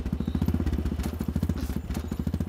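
Motorcycle engine running with a fast, even, low thumping beat.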